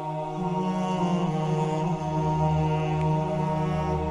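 Slow, chant-like background music of long held notes, the lowest note shifting once about half a second in.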